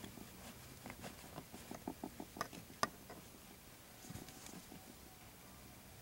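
Faint light clicks and taps of dolls and small props being handled, a quick run of them in the first three seconds with the sharpest near the end of that run, then a soft low bump about four seconds in.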